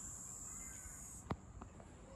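Insects calling in a steady high-pitched drone, which stops abruptly just past halfway with a single click, after which a fainter drone goes on.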